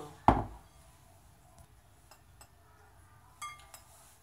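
Glass mixing bowls handled on a kitchen counter: one loud knock with a short ring shortly after the start, a few light clicks, then a ringing clink of glass near the end.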